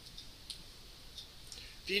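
A few faint, scattered clicks of a computer mouse as the code on screen is scrolled, the sharpest about half a second in, followed near the end by a man's voice.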